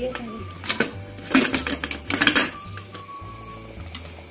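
Stainless-steel pressure cooker lid being unlocked and lifted off: a sharp click about a second in, then two short bursts of metal clattering and scraping, over background music.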